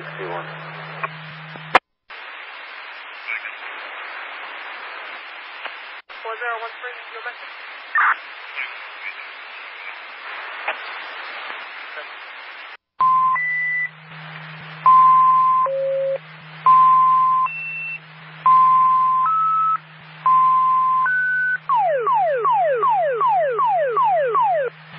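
Fire dispatch radio on a scanner: hiss with faint, garbled voices, then, about halfway in, a dispatch alert tone sequence over a low steady hum. Steady beeps switch between several pitches, followed near the end by a fast run of falling sweep tones, about three a second. These are the alert tones that precede a mutual-aid dispatch announcement.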